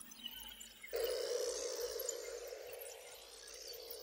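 Quiet, beatless atmospheric passage of psychedelic trance. About a second in, a sustained synth pad comes in suddenly with a high sweep rising and falling above it, then slowly fades.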